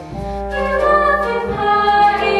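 A chorus of voices singing in harmony with pit orchestra accompaniment, over sustained low bass notes.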